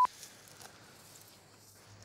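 A steady 1 kHz censor bleep cuts off right at the start, followed by faint outdoor background hiss.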